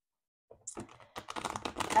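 A deck of oracle cards being shuffled by hand: a quick run of soft card clicks and flaps starting about half a second in and growing louder toward the end.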